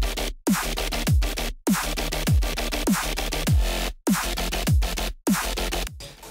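Dubstep drop playing back at 100 BPM: a deep kick drum with a falling pitch on every beat, about every 0.6 seconds, under dense electronic bass and synths. The music cuts out abruptly for short moments several times.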